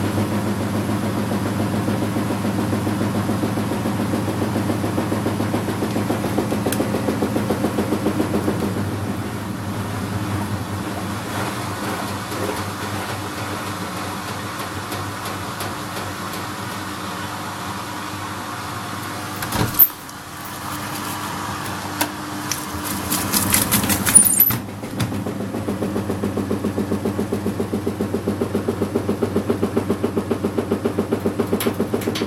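Front-loading washing machine drum turning wet laundry, its motor humming with a steady rhythmic pulse. About two-thirds of the way through, a sharp click is followed by a few seconds of noisier hissing and rattling, then the pulsing motor hum returns.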